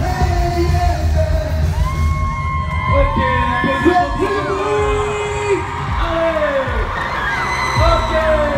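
Live amplified pop music with singing and a strong bass beat; about two seconds in the bass thins out and many voices yell and whoop over the music.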